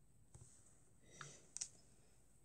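A few faint taps of a stylus on a tablet's touchscreen, the sharpest about a second and a half in, against near silence.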